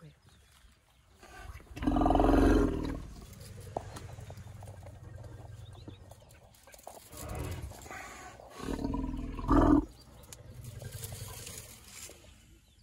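Deep African elephant rumbles at close range. A loud one comes about two seconds in and lasts about a second, with a low hum running on under it. Shorter ones follow around seven and nine and a half seconds in.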